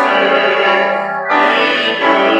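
A small group of men and women singing a slow worship song together, with instrumental accompaniment.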